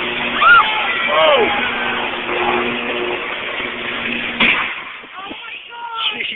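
Electrical arc from a tree falling across live power lines: loud crackling noise with a steady buzzing hum, and bystanders crying out. About four and a half seconds in there is a sharp crack and the hum cuts off, as the circuit breaker trips and shuts off the power.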